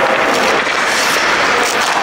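Ice hockey skate blades scraping and carving the rink ice under a steady, loud rush of noise, with a couple of sharp clicks about halfway and near the end.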